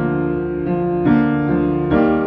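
Upright piano playing sustained chords with no voice, a new chord struck about four times and each left ringing.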